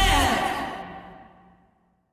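A pop-rock song ending: a last sung note, then the music dies away to silence over about a second and a half.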